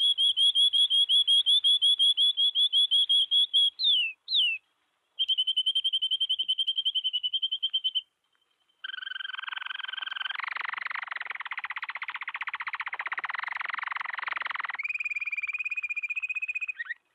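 Recorded canary song: fast trills of quickly repeated high notes, a couple of down-slurred notes about four seconds in, then after a short pause a harsher, buzzy trill and a higher trill near the end.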